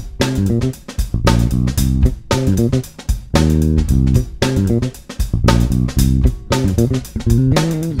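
Electric bass guitar playing a busy line of plucked notes with sharp attacks, several notes a second.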